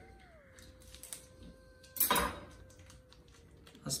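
A small food packet being opened by hand: scattered light clicks and crinkles, with one short, louder tearing rustle about two seconds in. A faint steady hum runs underneath, dipping in pitch at the start.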